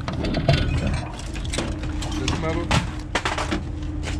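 Irregular clicks, knocks and rattles of metal and junk being handled in a truck's diamond-plate bed, with a brief voice partway through.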